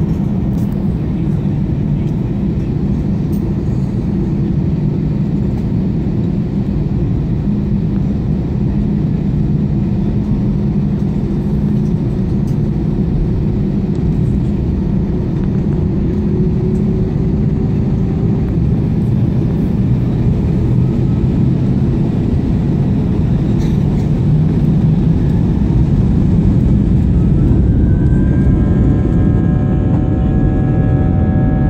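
Airbus A320 with IAE V2500 turbofans heard from inside the cabin while taxiing: a steady low engine rumble. In the last few seconds it grows louder and a rising whine with several steady tones comes in as the engines spool up for the takeoff roll.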